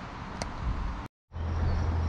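Steady outdoor background noise with a faint click and a small knock, broken by a brief dead silence at an edit, after which a steady low hum sets in.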